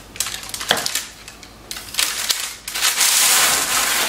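Parchment paper crinkling and rustling as it is handled and pulled out from under a baked loaf. Scattered small crackles come first, then a dense, loud rustle in the last second or so.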